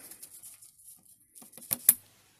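Faint handling, then a few sharp plastic clicks near the end as a fiber-optic patch connector is pushed home and latches into a switch's SFP transceiver port.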